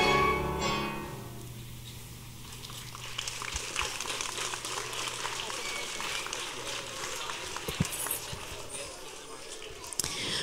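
A pit orchestra's closing music ends about a second in. It is followed by a large audience of children applauding and chattering.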